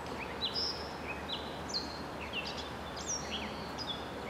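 Songbirds singing: a string of short, clear chirps and slurred whistles, several to the second, over a steady background hiss of outdoor ambience.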